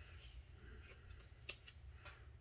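Near silence: faint handling of glossy baseball cards in the hand, a few soft clicks and slides, the clearest click about one and a half seconds in, over a low steady hum.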